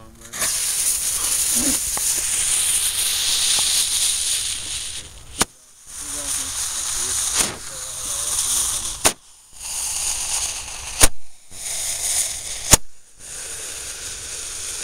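A firework fuse hisses for about five seconds after being lit. Then the firework fires balls of fire: five sharp pops about every one and a half to two seconds, with a hiss between them.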